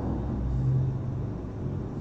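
A low, steady rumble that swells slightly in the first second.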